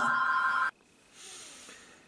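A telephone ringing with a steady two-tone electronic ring under a woman's voice, cut off suddenly less than a second in; after that only a faint hiss.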